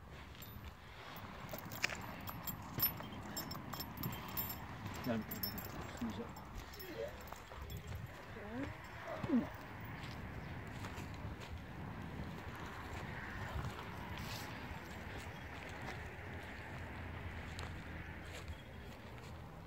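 Footsteps crossing dry, bare ground, with a few sharp clicks in the first seconds and some short voiced sounds about halfway through.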